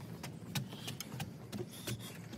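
Footsteps and light knocks on wooden deck stairs as someone climbs onto the deck, a handful of sharp irregular clicks, over a steady low hum in the background.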